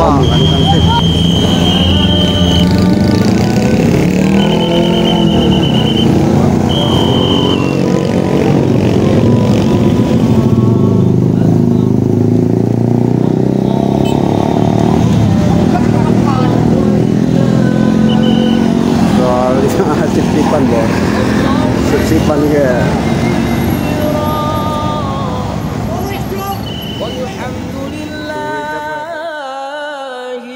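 A traffic helper's whistle blown in a long blast, then two shorter blasts, with two brief toots later on. Under it runs passing road traffic of motorbikes and cars, and a continuous chant of many voices.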